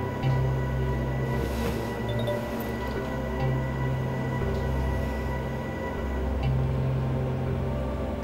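Dark, suspenseful film score: a low drone under held bass notes that change every second or two.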